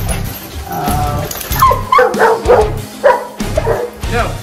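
Five-month-old coonhound puppy giving a quick run of high yips and whines, about five short cries in the middle seconds, over background music.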